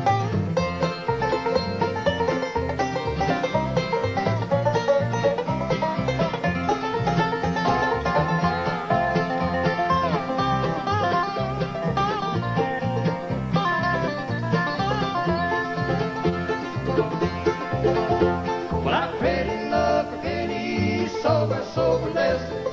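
Bluegrass band playing an instrumental break between sung verses: banjo and acoustic guitar over a steady bass pulse, with a melodic lead line on top. The singing comes back in right at the end.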